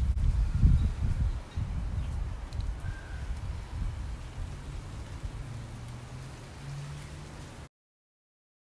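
Wind gusting over a phone microphone outdoors: a low rumble that is strongest in the first second and a half, then eases to a lighter buffeting. A faint steady low hum joins in the second half, and the sound cuts off suddenly just before the end.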